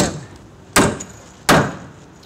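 Three sharp strikes about three-quarters of a second apart: nails being driven into the lumber of a wall's bottom plate.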